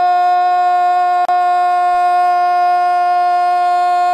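A TV football commentator's long drawn-out "Gooool" cry, one loud note held at a steady pitch, with a brief break about a second in.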